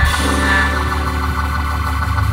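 Hammond organ holding a sustained chord over a steady low bass note, a new chord coming in right at the start and held unchanged.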